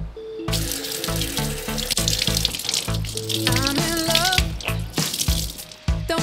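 Water running from a kitchen faucet into a stainless steel sink, wetting a microfiber cloth. It starts about half a second in and stops just before the end, over background pop music with a steady beat.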